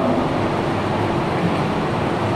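Steady whirring hum of electric wall fans running in the room, an even hiss with a faint steady tone and no change.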